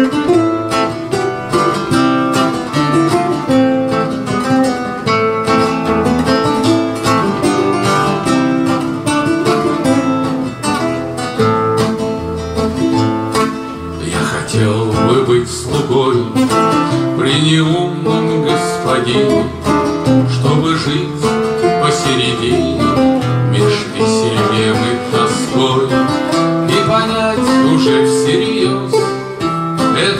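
Two acoustic guitars playing together, one a nylon-string classical guitar, with plucked melody lines over the accompaniment.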